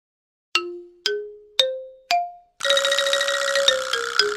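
Intro jingle of bell-like chimes: four struck notes climbing in pitch, about half a second apart, each ringing out and fading, then a held tone with a rapid ticking shimmer over it.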